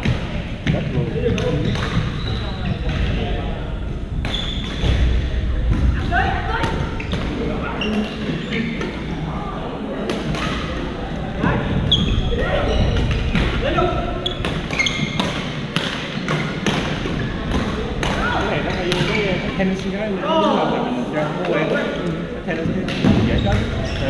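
Badminton play in an echoing gym hall: irregular sharp racket strikes on shuttlecocks from the rallies, over a steady background of players' voices across the courts.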